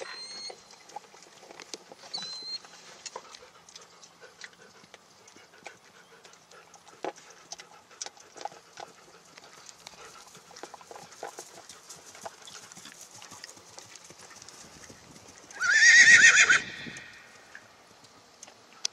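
A ridden horse's hoofbeats on dry turf, faint and irregular. Near the end a horse whinnies loudly once: a high call with a wavering pitch, lasting about a second.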